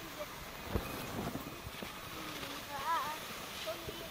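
Snowboards sliding and scraping over snow, with wind on the microphone. A child gives a short call that rises and falls about three seconds in.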